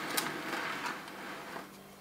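A fossil-bearing rock being turned around by hand on a work surface: a soft scraping rub with a small click near the start, fading out after about a second.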